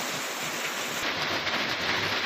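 Steady rushing storm noise, an even hiss of wind and rain with no pitch or rhythm.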